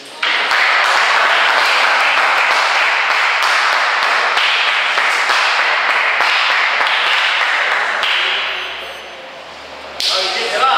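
Several people clapping in applause after a table tennis point, starting suddenly and fading out near the end.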